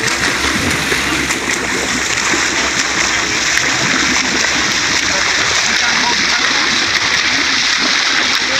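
Steady splashing and rushing of sea water beside a boat's hull as a swimmer does front crawl alongside, with a low steady hum underneath.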